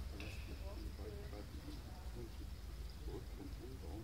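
Indistinct talking of several people in a large, echoing hall, over a steady low rumble. A brief high tone sounds just after the start.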